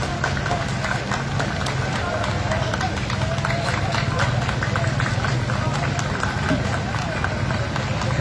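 Voices over steady outdoor street noise, with many short sharp clicks throughout.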